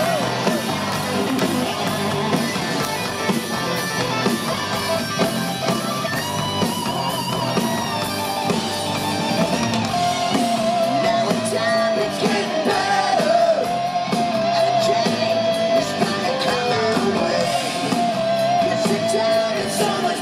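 Hard rock band playing live, with electric guitars over drums and some singing; from about halfway through, long held notes waver over the band.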